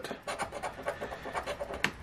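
A coin scraping the coating off a scratch-off lottery ticket in quick, irregular short strokes, with one sharper scrape near the end.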